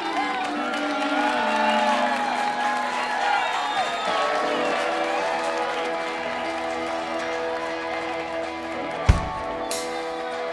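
Live rock band playing a slow, sustained intro: electric guitars and keyboard holding chords, with some gliding, bending notes over them. A single drum hit lands near the end, just before the full kit comes in.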